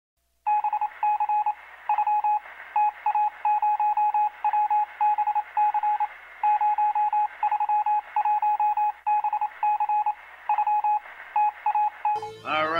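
Electronic beeps at a single pitch, in quick uneven groups of short and longer pips over a faint hiss. The sound is thin and narrow, like a signal heard over a telephone line. It starts about half a second in.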